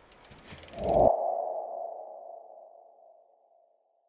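Logo-sting sound effect: a quick run of ticking clicks for about a second, then a swelling hit into a single ringing ping that fades away by about three seconds in.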